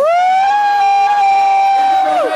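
One loud, long high-pitched whoop from a single voice close by, rising into the note at once, holding it steady for about two seconds and dropping away at the end.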